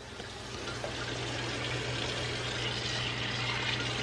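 Kitchen faucet running into a stainless steel sink, the water pouring over a plastic container held under the stream. The sound grows a little louder over the first second or so, over a steady low hum.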